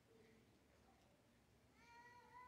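Near silence: hushed room tone, with a faint drawn-out high-pitched sound beginning near the end.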